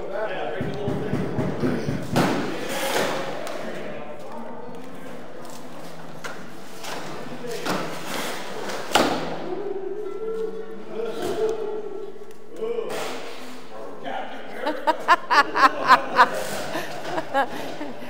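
Scattered thumps and knocks of construction work, echoing in a large hall, with voices in the background and a laugh near the end.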